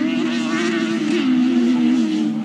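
Several distant race car engines running hard on a dirt track, a continuous drone whose pitch wavers as the drivers accelerate and lift.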